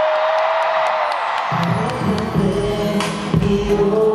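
Live pop music over an arena sound system, with a crowd screaming and cheering. A held high note opens over a dropped-out beat, and the bass and beat come back in about a second and a half in.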